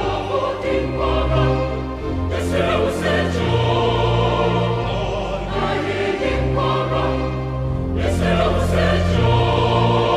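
Large mixed choir singing a choral anthem in full harmony over sustained low organ notes that shift from chord to chord.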